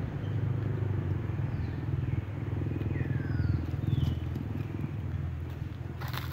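A low engine running steadily at idle, a continuous rumble that swells slightly around the middle. Several faint, short, high descending whistled calls sound over it.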